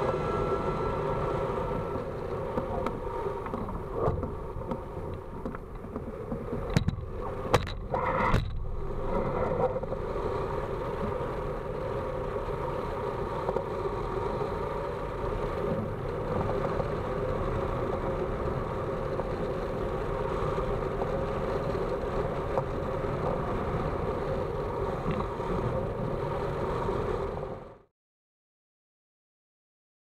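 Steady rush of airflow over the microphone of a camera mounted on a hang glider in flight, with a few sharp knocks about seven to eight seconds in. The sound cuts off just before the end.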